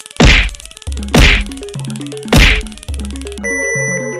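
Three loud whacks about a second apart over an electronic music track with fast ticking and a stepping bass line; sustained synth tones come in near the end.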